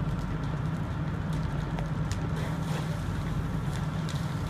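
Steady low rumble of fire engines running at the scene, with faint scattered crackles and pops from the fire.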